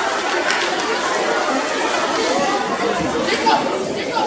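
Several voices talking at once, an overlapping chatter with no single clear speaker.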